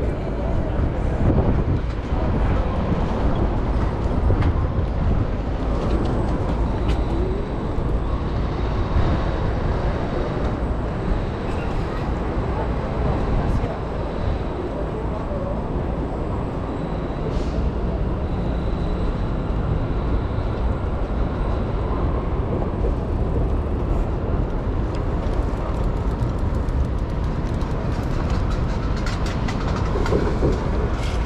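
Steady wind rumble on the microphone mixed with tyre and city traffic noise while riding a Ninebot electric scooter along a street bike lane.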